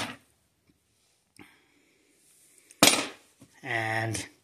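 A long steel hex bolt set down on a hard plastic case lid: a faint click, then a sharp clack near the end that rings briefly. A short voiced hum follows just before the end.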